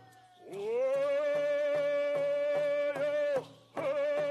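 Stó:lō hand drums beating steadily, about two and a half beats a second, under a long held sung note that slides up into pitch at the start. The note breaks off and a new held note begins near the end.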